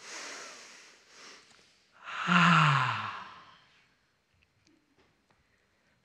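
A physiological sigh: a long inhale, then a short second inhale, then from about two seconds in a long exhale with a voiced sigh that falls in pitch.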